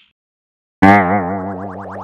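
A twangy, boing-like sound effect starts suddenly a little under a second in. A steady low drone sits under a wavering upper tone that turns into quick upward sweeps, about seven a second.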